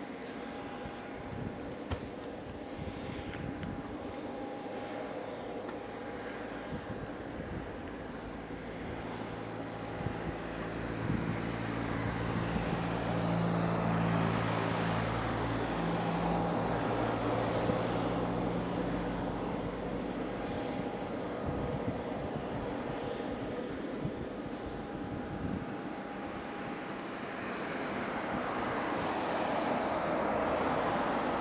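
Jet aircraft engines running on the ground at an airport: a steady whine over a low hum. It grows louder through the middle and swells again near the end.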